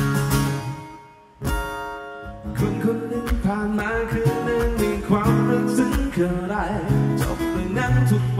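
Martin DCME acoustic guitar strummed. A chord rings out and dies away almost to nothing, a new strum comes in about a second and a half in, and steady rhythmic strumming with chord changes follows.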